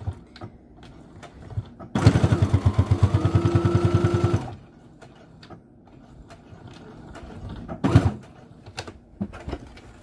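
Electric sewing machine stitching through batting and fabric: about two seconds in it runs for some two and a half seconds, rapid even needle strokes over the motor's whine, then stops. A single sharp knock comes near the end.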